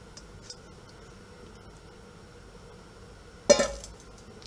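A stainless steel mixing bowl set down on a granite countertop about three and a half seconds in: one loud metallic clank that rings briefly.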